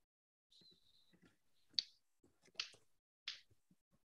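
Faint computer clicks and taps over a video-call line, mouse and keyboard, while a screen share is being set up. There are scattered light ticks, with three sharper clicks in the second half.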